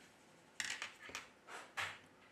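About five faint, short clicks and rustles of small-part handling in the second half: metal tweezers lifting a smartphone's thin motherboard flex cable free and moving it aside.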